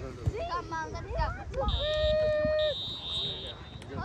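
A referee's whistle blown in two blasts, the first about a second long and the second a little shorter, over shouts from the field; a steady lower held tone sounds under the first blast.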